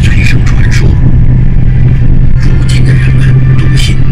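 Steady low drone of a vehicle's engine and road noise, heard from inside while it drives, with voices talking over it.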